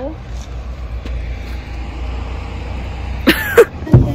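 Low steady engine rumble of a bus pulling up to the stop, cutting off abruptly a little after three seconds in; near the end come two short, loud sharp sounds.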